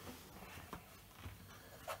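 Faint rustling and handling noise in a small room, with a couple of light clicks, as the player moves about off-camera.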